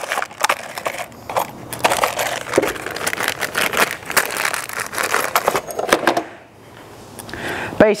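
Handling noise of small hardware being picked up and sorted: dense clicks, rattles and rustling, easing off after about six seconds.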